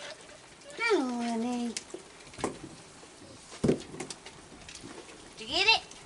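Two short wordless vocal sounds. The first comes about a second in, falls and then holds; the second, near the end, rises and falls. A few sharp knocks fall between them.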